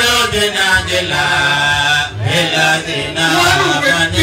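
A man's voice chanting an Islamic devotional chant into a microphone, in long held, wavering notes, two drawn-out phrases with a short breath about two seconds in.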